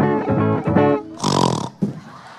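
Guitar played through a sound system in a steady rhythm of chords, about four strokes a second, broken off about a second in by a loud, rough burst of sound.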